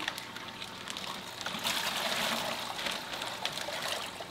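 Water trickling and splashing steadily, swelling to a louder rush for about a second and a half in the middle.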